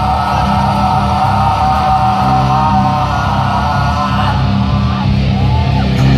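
Live rock band playing, with electric guitars, bass guitar and drums, loud and steady throughout.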